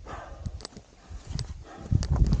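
Climber scrambling on rock: hands and boots scraping and knocking against loose stones, with a brief breath near the start and gusts of wind rumbling on the microphone.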